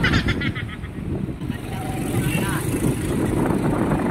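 Wind buffeting the microphone with the steady rumble of a moving motorcycle and its road noise.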